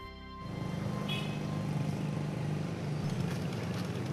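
Street ambience with a motor vehicle engine running steadily, setting in about half a second in, over background music.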